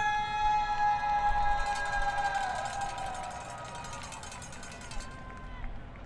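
Stadium PA announcer's voice holding one long drawn-out call, steady for about two and a half seconds, then sliding down in pitch and fading, with echo off the stands.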